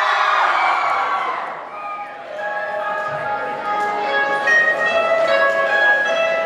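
A crowd cheering and shouting, dying down about two seconds in. Then a band's keyboard begins an intro of sustained, bell-like notes.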